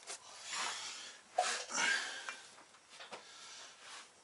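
Rustling and light knocks of forged conrods being packed back into their box among foam packing beans, with a sharp click about a second and a half in.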